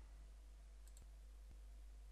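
Near silence with two faint computer mouse clicks, about a second in and half a second apart, as a menu item is selected.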